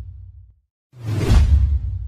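Two booming sound-effect hits: each is a deep bass boom with a swishing noise on top that fades away. The tail of the first dies out in the first half second, and the second strikes about a second in.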